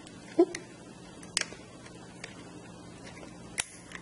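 Small clicks and taps of plastic LEGO EV3 parts and a connector cable being handled, with a few sharper ones about half a second, a second and a half, and three and a half seconds in.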